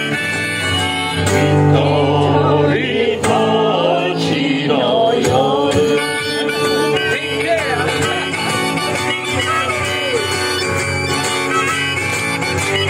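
Acoustic guitar strummed with a harmonica played from a neck rack in a live folk song. The harmonica's notes waver and bend over a steady guitar accompaniment.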